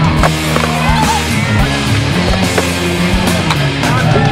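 Rock music soundtrack over a skateboard rolling on concrete, with a few sharp clacks of the board scattered through.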